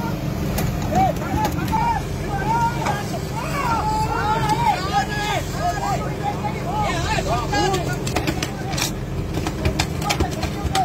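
Fishing boat's engine running steadily under a crew of men calling out again and again in short, rising-and-falling shouts. A few sharp knocks come near the end as hooked tuna are flicked onto the deck.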